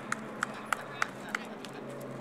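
A series of light, evenly spaced clicks, about three a second, over a low steady hum.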